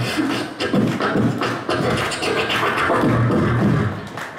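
A human beatboxer performing live into a handheld microphone, amplified through PA speakers. He makes a fast, continuous string of percussive mouth sounds over low vocal bass tones.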